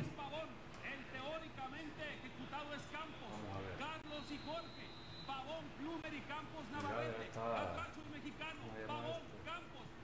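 A man's voice talking steadily at a low level, most likely the television commentary on the football match footage playing on screen. A brief steady high tone sounds near the middle.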